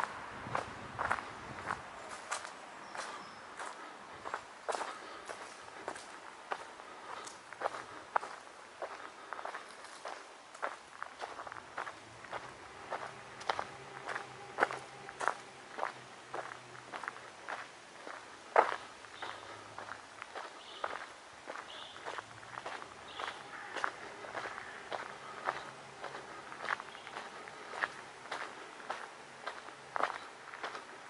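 Footsteps of one person walking at a steady pace on a paved path, one step a little louder than the rest near the middle.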